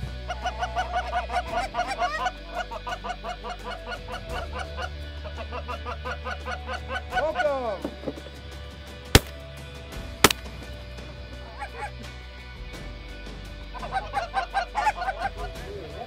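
Rapid, repeated Canada goose honking, then two shotgun shots about a second apart a little past halfway; the honking thins out after the shots and picks up again near the end.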